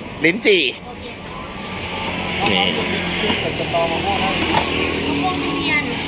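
Road traffic passing close by: vehicle engine and tyre noise swelling from about a second in and then holding steady.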